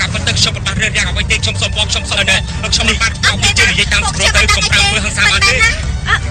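People speaking, loudest in the second half, over a steady low rumble.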